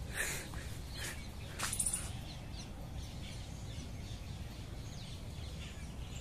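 Birds chirping faintly, with a few sharper short calls in the first two seconds, over a steady low rumble of outdoor background noise.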